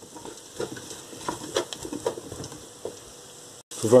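Diced vegetables and flour frying quietly in a stainless steel pot while being stirred, with scattered scrapes and clicks of the spoon against the pot: the flour is being toasted with the vegetables. The sound cuts out briefly near the end.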